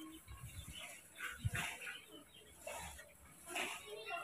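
Faint, scattered short animal calls, with a low thump about one and a half seconds in.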